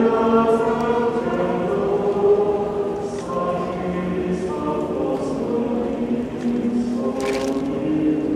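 Recorded choral music: a choir singing long, held chords that shift every second or so.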